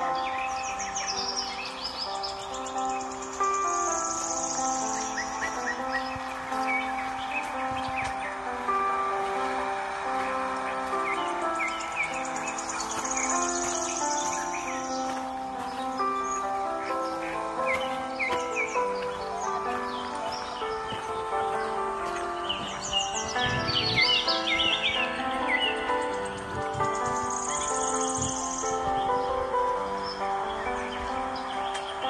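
Background music of slow, held notes that shift in steps, with high chirping coming in a few times.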